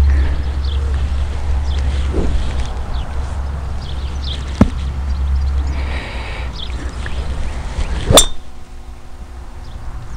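A driver striking a golf ball off a tee on a slow swing: one sharp, ringing click about eight seconds in.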